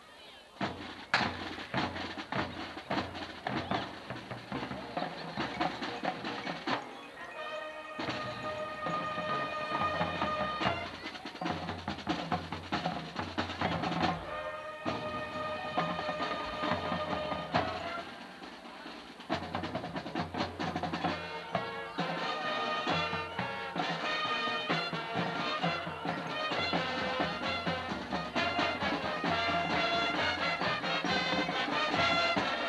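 High school marching band playing, with brass and drums. It opens with a sharp hit about a second in and has long held chords twice. After a short dip in the middle, the full band comes back louder.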